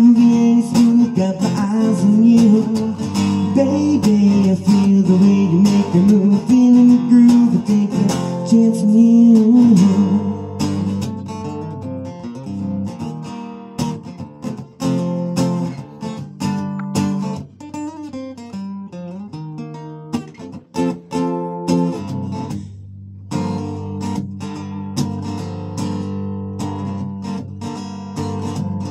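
Amplified acoustic guitar playing a slow blues song, with held sung notes over roughly the first third, then an instrumental guitar passage of picked notes and chords. The playing drops out briefly a little after three quarters of the way through, then resumes.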